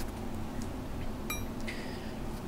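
One short, ringing metallic clink about a second in, from small steel parts being handled: the jig's set screw and the steel dimple jig block against each other or the barrel. A steady low hum runs underneath.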